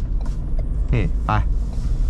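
Steady low drone of a Ford Everest's 2.0-litre single-turbo diesel and its road noise, heard inside the cabin while the SUV is driven.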